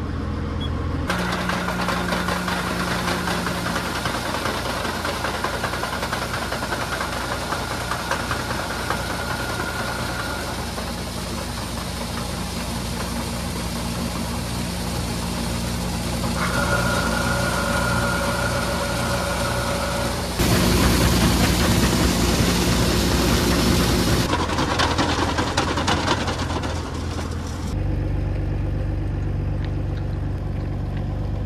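Engine of farm machinery running steadily, with a high whine that comes and goes. It gets louder for about four seconds past the middle, then settles to a lower, steadier hum near the end.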